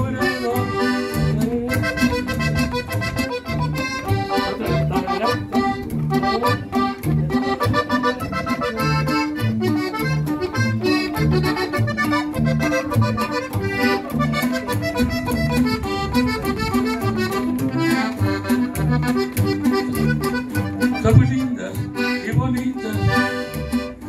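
Instrumental break of a norteño song: a diatonic button accordion plays the melody over a guitar's accompaniment, with a steady repeating bass beat throughout.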